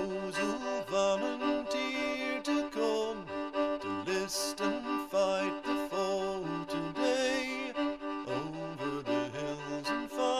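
Bowed-string music: a violin melody of held notes with vibrato over a lower cello-like line.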